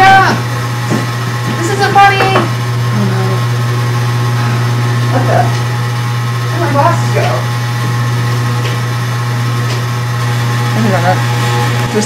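A steady low droning hum with faint higher tones above it, running without a break. Short breathy vocal sounds come over it now and then.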